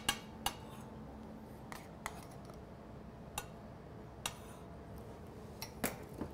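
A few faint, irregularly spaced clinks of a metal spoon against a small saucepan and china plates as beetroot mousse is spooned out and smeared onto the plates, over quiet kitchen room tone.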